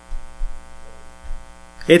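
Steady electrical mains hum in the microphone's audio, with a few brief low thumps. A man's voice starts just at the end.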